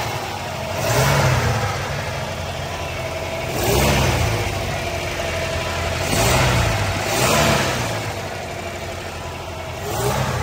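1952 Lincoln Capri's 317 cubic-inch V8 idling, blipped four times so the engine note rises and falls back to idle.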